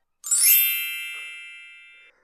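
A single bright ding: a struck chime rings out with high, clear tones, fades over about two seconds, then cuts off.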